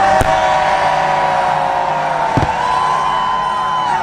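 Fireworks show soundtrack playing over loudspeakers, holding one long note that steps slightly higher past the middle, with two sharp firework bangs, one just after the start and one a little past the middle.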